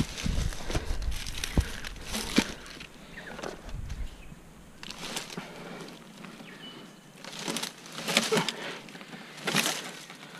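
Cut log rounds being handled and shifted among dry leaves and sticks: a few wooden knocks in the first couple of seconds, then intermittent rustling and scraping.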